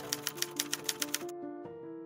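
Typewriter keystroke sound effect: about ten quick clicks over the first second or so, then stopping, over soft background music of held notes.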